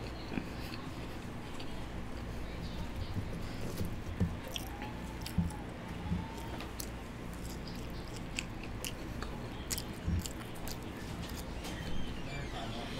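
A person chewing and biting seasoned french fries, with scattered soft crunches and small wet mouth clicks over a steady low room hum.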